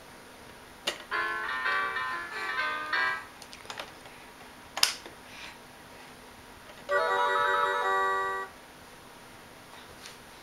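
A baby's electronic activity table playing electronic jingles as its buttons are pressed: a quick run of short stepped notes about a second in, then a few seconds later a held tune of steady tones. Sharp knocks of hands on the plastic come just before the first jingle and between the two.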